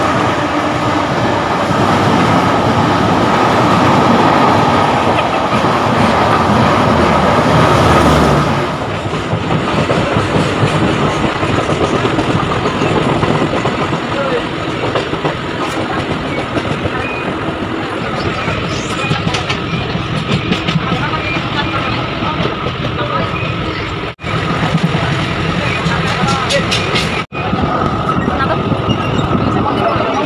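Train noise: a Maitree Express passenger train running past a station platform, then, from about eight seconds in, the steady running noise of riding inside a moving train, with two brief breaks in the sound near the end.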